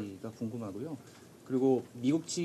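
Speech only: short spoken calls in a press room, with one louder call about three quarters of the way in.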